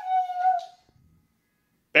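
Siberian husky giving one drawn-out, high whine that slides slightly down in pitch and stops under a second in.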